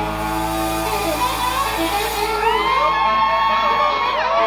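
A live rock band's closing chord ringing out on sustained electric guitars, with no drums. The crowd cheers and whoops over it, with rising calls in the second half.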